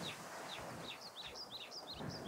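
Songbird chirping: a quick run of short, high chirps, several a second, over a faint, even outdoor hiss.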